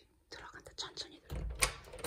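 Hushed whispering in short hissy bursts, with a low thump and a sharp click about a second and a half in, the loudest moment.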